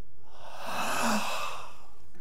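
A man's long breathy sigh, starting about half a second in and trailing off with a short voiced end: a storyteller voicing a last breath to act out a peaceful death.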